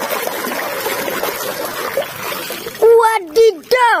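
Water splashing and sloshing as a mud-caked plastic toy double-decker bus is swished about by hand under water to wash the mud off. The splashing stops about three seconds in.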